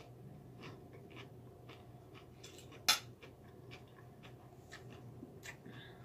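A person chewing a mouthful of lasagna and salad: soft, irregular wet mouth clicks and smacks, with one sharper click about three seconds in.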